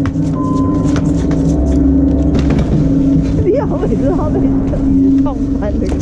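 Chairlift drive machinery at the loading station, giving a steady, loud hum. Clicks of skis and poles sound over it in the first few seconds, and short high tones rise and fall over it from about halfway.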